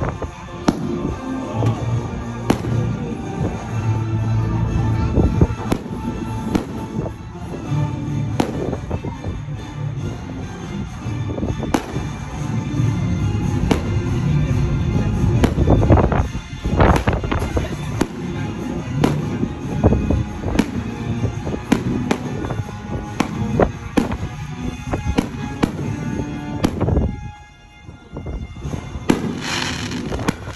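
Fireworks bursting overhead, a steady run of sharp bangs about once a second, with music playing underneath. The bangs pause briefly near the end before another loud burst.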